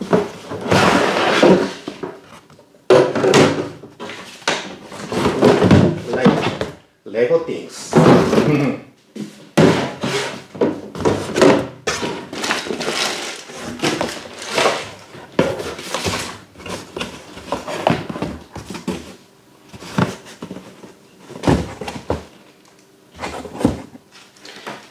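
Unpacking noise from a cardboard box: the cardboard flaps rustle and scrape, and hollow plastic massage-machine parts knock on the tabletop in irregular thunks as they are lifted out and set down.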